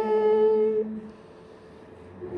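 Voices singing together, holding a long steady note in octaves that ends about a second in, then a brief pause between phrases.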